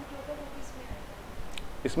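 Only speech: a man's lecturing voice, faint and low in the first moments, then a short spoken word near the end.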